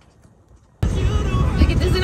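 Faint outdoor quiet with a few soft high chirps, then a sudden cut, under a second in, to the inside of a moving car: a loud, steady low road and engine rumble with a voice starting to talk over it.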